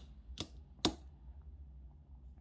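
Three light, sharp clicks a little under half a second apart in the first second, over faint room tone.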